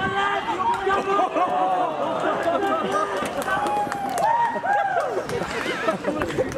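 A small crowd of rugby spectators shouting and yelling over one another, several voices at once, with long drawn-out yells building near the end as the attack reaches the try line.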